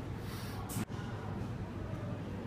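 A person's short breathy exhale close to the microphone, cut off abruptly just under a second in, followed by steady room noise.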